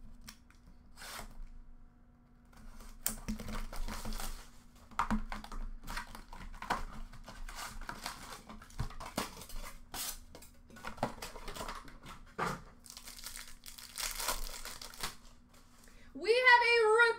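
Hockey card packaging being torn open by hand: the box and its foil packs ripped and the wrappers crinkling in irregular rasps, starting about three seconds in after a short quiet spell.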